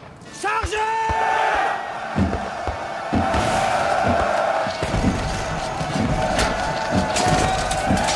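A man shouts a single short word, then many soldiers' voices rise in a long battle cry over orchestral film music. Low thuds and booms of cannon fire come in after a couple of seconds and grow heavier through the second half.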